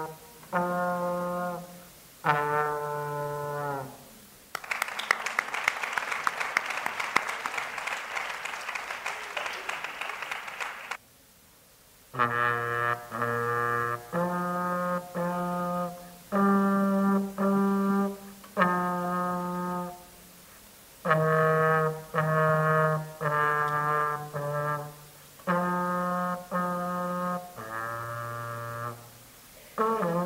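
Trombone played solo by a young student: a slow tune of separate held notes, each about a second long with short breaks between them. From about five to eleven seconds in the playing stops for a stretch of dense crackling noise, followed by a brief silence before the notes resume.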